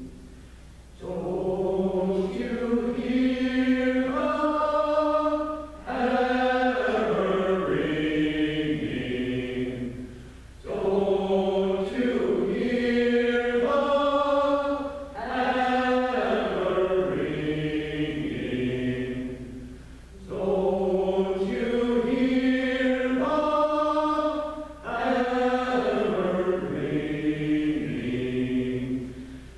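Mixed choir singing a slow chant-like refrain in phrases of about five seconds, each broken by a short pause for breath, with the same pair of phrases repeating.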